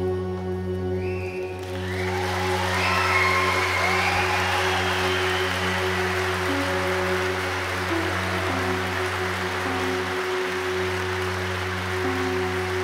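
A band holding long low notes that shift pitch a few times, while audience applause with some cheers breaks out about two seconds in and carries on.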